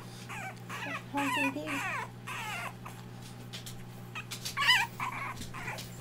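French bulldog puppy whining in a string of high, wavering whimpers, with the loudest one near the end: a puppy crying for attention.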